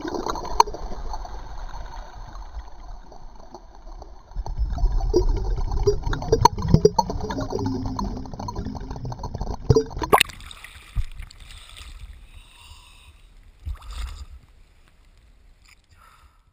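Underwater bubbling and rushing water, a muffled low rush with gurgles and small clicks, loudest from about four to ten seconds in. A sharp hit comes about ten seconds in, and after it the water sound thins and fades away.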